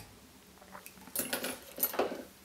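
Small metal fly-tying tools handled on the bench: a quick cluster of light metallic clinks and taps in the second half.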